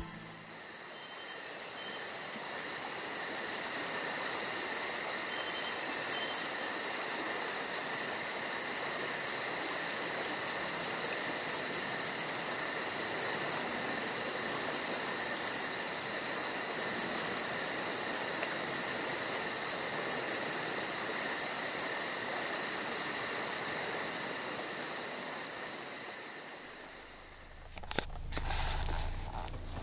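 Evening insect chorus of crickets: a steady high-pitched trilling with a fast, even pulse, fading in over the first few seconds and out near the end.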